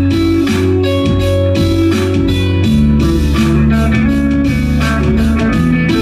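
Electric guitar played live over held bass notes that change about once a second and a steady beat.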